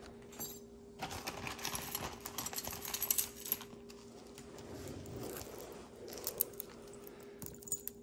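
Costume jewelry chains and metal pieces clinking and jingling as they are picked through and handled, with a quick flurry of light clicks in the first few seconds that thins out afterwards.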